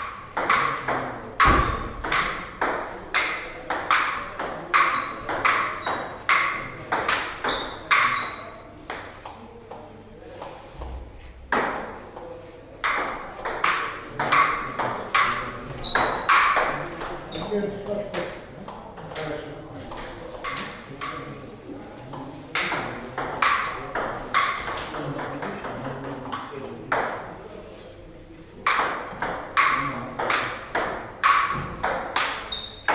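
Table tennis rallies: the ball clicking off the players' bats and the table in quick back-and-forth, about two hits a second. There are several runs of hits with short quieter pauses between points.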